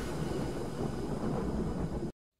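Intro sound effect: a steady, rumbling whoosh of noise, with no clear tune, that cuts off abruptly at the end.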